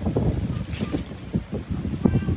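Wind buffeting the microphone: a rough, low rumble that gusts up and down.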